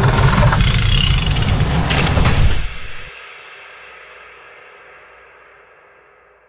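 Logo-reveal sound design: a loud, deep whooshing rumble with a sharp hit about two seconds in, which cuts off about two and a half seconds in and leaves a soft ringing chord that slowly fades away.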